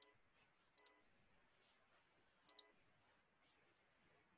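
Faint computer mouse clicks in three quick pairs: at the start, about a second in, and about two and a half seconds in. The clicks pick the points of lines being drawn in a CAD program.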